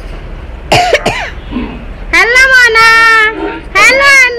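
People's voices: a short harsh vocal burst about a second in, then two long, high-pitched drawn-out calls in the second half.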